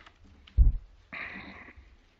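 Handling noise at a lectern: a low thump on or near the microphone about half a second in, then a brief rustle, as the passage is looked up.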